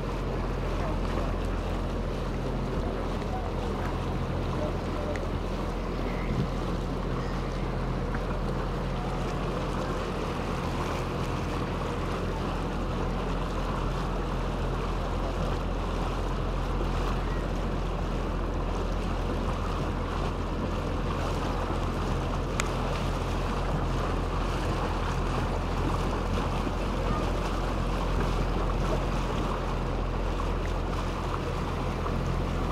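Motor of an open canal tour boat running at a steady cruising speed, a constant low hum, with water washing along the hull and some wind on the microphone.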